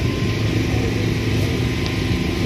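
A steady low rumble with a constant hum running under it, from a machine or engine running without pause.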